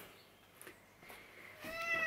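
A domestic cat starts a single meow about a second and a half in, after a near-quiet pause.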